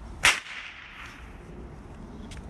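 A single sharp whip crack about a quarter second in, with a short echo trailing off after it.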